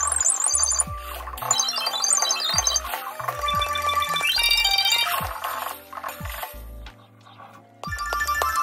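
A marching band's front ensemble playing: marimba and other mallet keyboards in fast rising and falling runs over low bass notes. The playing thins out to near quiet about six seconds in and starts up again at the very end.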